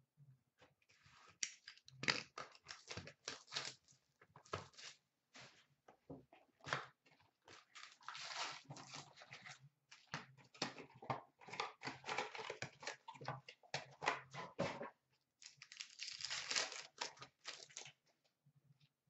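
A hockey card hobby box and its foil card packs being opened and handled by hand: tearing and crinkling of cardboard and wrappers, with many small clicks and taps, coming in irregular busy spells.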